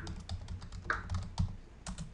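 Typing on a computer keyboard: a fast, irregular run of key clicks as a few words are typed.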